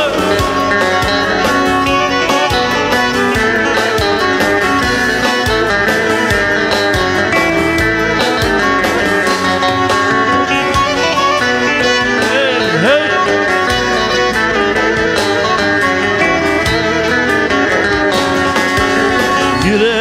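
Black Sea kemençe playing an instrumental passage of a folk song, with string accompaniment, between sung lines.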